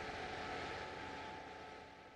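Steady outdoor street background noise with a faint hum, fading out near the end.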